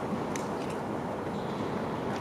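Steady background noise of a large indoor sports hall, with two faint short ticks about a third and two-thirds of a second in.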